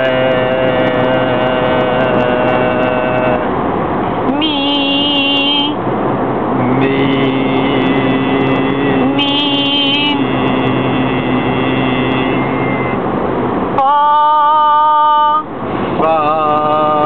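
A man singing long, held notes inside a moving car, over steady road noise. Each note is held for one to several seconds, and the last, highest one is the loudest, near the end.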